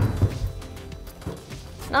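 A single thump at the start as a climber moves on a wooden bouldering wall, followed by soft background music with steady held tones.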